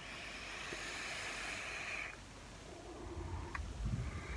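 A drag on an electronic cigarette: an airy hiss of air drawn through the vape for about two seconds. A low rumble comes in near the end.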